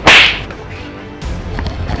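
One sharp, loud swish at the very start that dies away within half a second, followed by background music.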